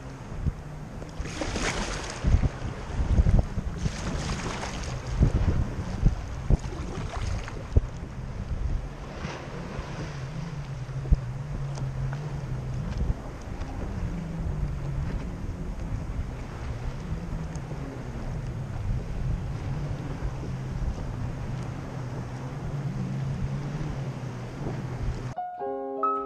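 Jet ski engines droning at a slightly wavering pitch over open water, with wind gusting on the microphone in the first several seconds. Piano music starts about a second before the end.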